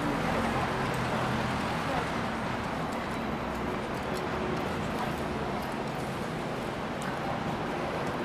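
Busy city street ambience: indistinct voices of passers-by over steady traffic noise.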